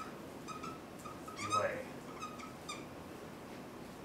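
Dry-erase marker squeaking on a whiteboard as words are written: a run of short, high squeaks, the longest and loudest about a second and a half in, stopping before the end.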